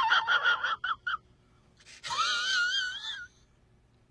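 A man's high-pitched, strained voice: a quick run of short squeaky pulses, then after a pause one long wavering high note.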